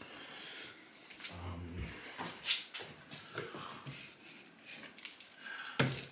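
Kitchen handling noises: a few light knocks and clicks as things are picked up and set down on a countertop, the sharpest about two and a half seconds in.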